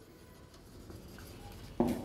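Faint scratching of a marker pen writing words on a whiteboard.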